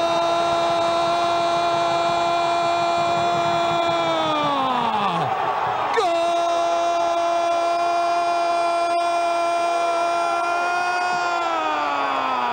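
Male football commentator's drawn-out "goool" shout for a goal: one long call held at a single pitch for about four seconds and then falling away, then a second call starting about six seconds in, held and falling near the end.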